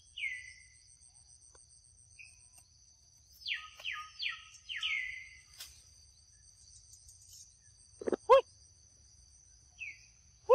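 Forest ambience: insects droning in steady high thin tones, with a run of falling whistled calls about halfway through. About eight seconds in, two short, loud, pitched animal calls stand out above everything else.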